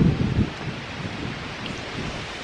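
Wind noise and handling rumble on the microphone as the handheld camera is swung around: a steady rushing hiss, with a louder low rumble in the first half second.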